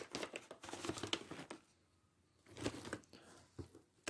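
Faint crinkling of a plastic snack pouch being opened up and handled, in two short spells with a pause in the middle.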